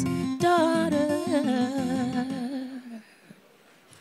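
A woman singing a closing wordless, wavering vocal line into a microphone over instrumental chords. The song fades out about three seconds in, leaving near quiet.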